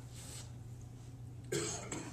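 A single short cough or throat-clearing, about one and a half seconds in, over a steady low hum.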